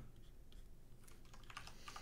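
Faint clicks of a computer keyboard over quiet room tone, a few keystrokes as the editor works a shortcut.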